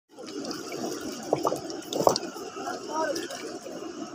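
Shallow river water sloshing and splashing as hands work among the stones at the water's edge, with two sharper, louder splashes about a second and two seconds in.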